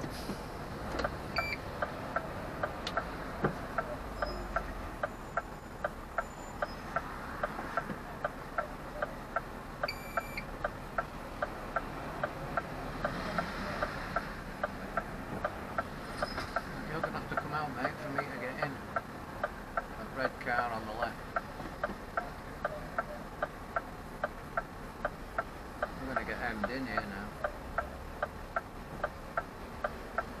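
Lorry cab's indicator flasher relay ticking steadily, about two ticks a second, over the low running of the engine.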